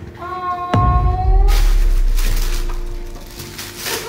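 A woman's drawn-out, high 'ohh' of surprise, then a low boom and about two seconds of loud rustling noise as the gift box and its tissue are opened, over background music with steady held tones.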